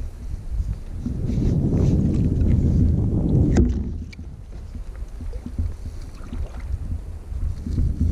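Wind rumbling on the microphone, with water lapping at a kayak hull. The rumble is strongest in the first half, and a single sharp click comes about three and a half seconds in.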